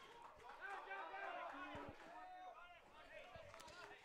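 Faint, distant voices calling and shouting in the open air while the play is on.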